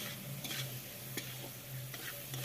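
Metal spatula stirring and scraping onions frying with ginger-garlic paste in a large kadai, over a steady sizzle of hot oil, with three sharp clinks of the spatula against the pan.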